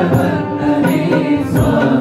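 A group of men singing a Hindu devotional song together, accompanied by a keyboard and hand-played drum strokes that mark the beat.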